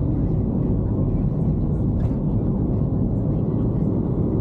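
Steady road and engine rumble heard from inside a moving vehicle's cabin.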